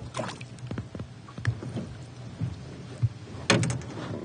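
A walleye being lifted by hand out of the water over the side of an aluminium boat: splashing and scattered knocks against the hull, then a short burst of sharp clattering near the end, the loudest part.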